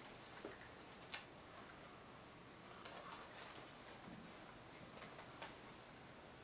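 Near silence with a few faint, scattered clicks from a plush singing rooster toy being handled and turned around; the toy's song is not playing.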